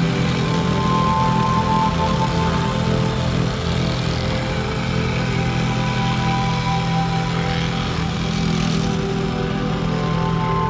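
Vibrating plate compactor's small engine running steadily while it compacts the hardcore sub-base, with background music over it.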